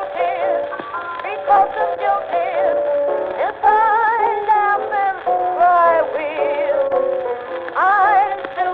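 Early blues record: a sliding, wavering melody line with vibrato over a steady accompaniment. It has the dull, narrow-range sound of an old recording, with no treble.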